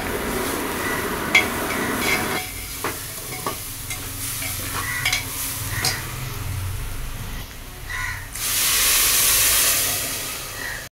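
Steel spoon stirring rice as it fries in an aluminium pot, with grains scraping and the spoon clicking against the metal now and then. Near the end, water poured into the hot pot makes a loud hiss.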